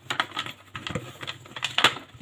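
Light, irregular taps and clicks of a container being handled on the kitchen counter, with a sharper knock near the end.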